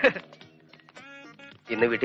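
Film dialogue that breaks off for about a second and a half, leaving faint background music in the pause, before a voice comes back in near the end.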